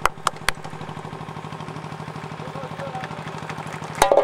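A steady engine hum with a rapid, even pulse. A few sharp knocks come in the first half second, and faint voices sit under the hum.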